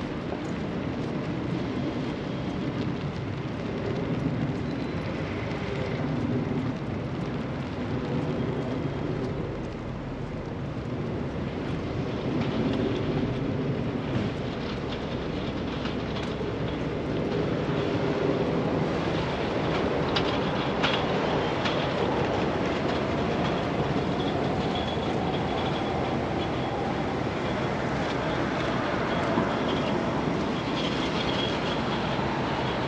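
A train running on nearby tracks: a continuous noise that grows louder in the second half, with a faint high tone near the end.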